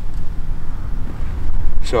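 Low, gusty rumble of wind buffeting the microphone.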